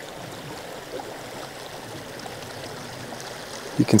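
Small, shallow creek flowing steadily over its bed.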